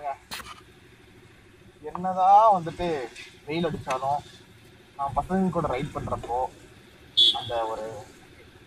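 Men's voices talking in short bursts over a motorcycle engine idling with a steady hum.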